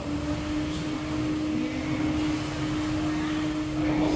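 A motor running with a steady hum at one pitch, over a background of noise.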